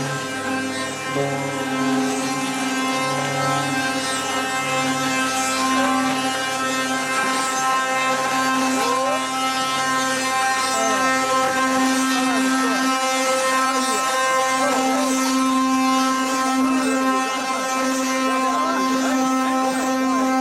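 Ox cart's wooden axle singing as the cart rolls (the carro de boi's 'canto'): a steady, droning whine with many overtones, with thinner squeals over it that rise and fall in pitch.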